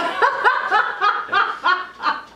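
A woman and a man laughing together: a quick run of short laughs, about five a second.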